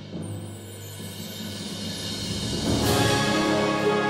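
Wind band music: a low timpani roll swells in a crescendo after a held chord dies away. It peaks in a bright crash about three seconds in, as the full band comes back in on a new held chord.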